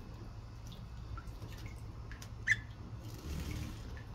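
Water dripping in a budgerigar's cage bath: scattered light drips, with one sharper drop about two and a half seconds in. Near the end comes a brief rustle of feathers as the wet budgie shakes itself, over a steady low hum.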